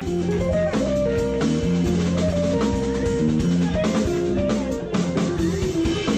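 Electric guitar playing a jazz line of single notes and chords with a live band, bass and drums underneath.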